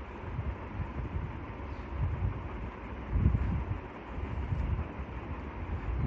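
Low, uneven rumbling background noise that swells a little past the middle, with a faint steady hum above it.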